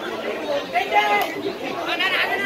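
People's voices talking and chattering, with no other sound standing out.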